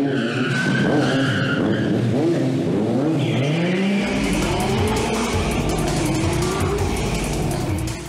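Tires squealing through the first couple of seconds, then engines revving, rising and falling in pitch: a Corvette Z06 police car and a sport motorcycle. Music plays underneath.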